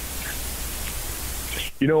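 Steady hiss with a low hum underneath: the open line's background noise in a pause between speakers. About two seconds in, a man starts to speak over a telephone line, his voice thin and cut off at the top.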